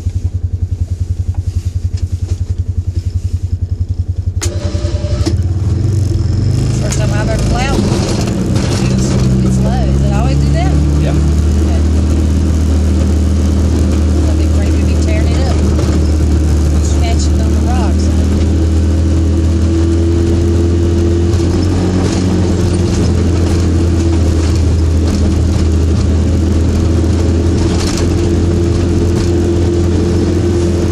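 Polaris Ranger 570's single-cylinder engine running steadily, picking up load about four seconds in as the machine drives and plows through snow. Scattered squeaks and clicks sound over it in the first half.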